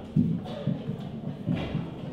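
Irregular low thumps and knocks from microphones being handled and a mic stand being adjusted, heard through the hall's PA, about three or four in two seconds.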